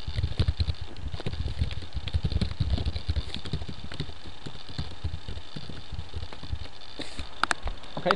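Computer keyboard typing in quick, irregular keystrokes, each with a dull low thump as well as a click. A few sharper clicks come near the end.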